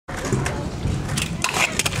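Kick scooter wheels rolling over asphalt, a steady rumble with a few sharp clicks in the second half.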